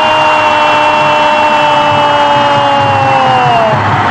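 Arabic football commentator's long, held shout of "goal" ("gooool"), steady in pitch and then dropping away near the end, over a cheering stadium crowd.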